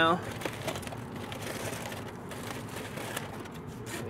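Aluminium foil crinkling and crackling as a foil-wrapped brisket is pulled open by hand.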